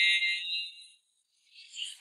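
A shrill, steady synthesized tone from the house music mix fades out within the first second. After a short silence comes a brief faint whoosh just before the music returns.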